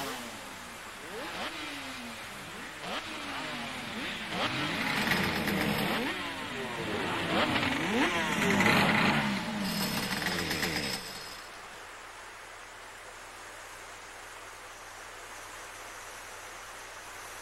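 Several racing motorcycle engines revving together on a starting grid, their pitches rising and falling over one another. About eleven seconds in they cut off abruptly, leaving a steady hiss of heavy rain.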